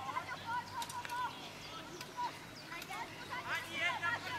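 Faint, distant voices of spectators talking and calling out along a race course, with no clear words.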